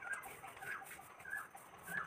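Chickens clucking: four short calls, one about every half-second.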